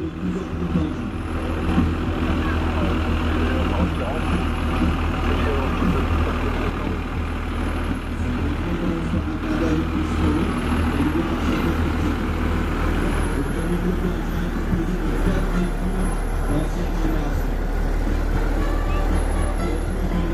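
Diesel engine of an old Berliet fire engine running steadily as the truck drives slowly past at parade pace, a low, even engine note.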